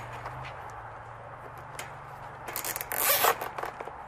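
A plastic zip tie being cinched tight through its ratchet: a rapid burst of clicks from about two and a half to three and a half seconds in, after a few light scattered clicks and scrapes.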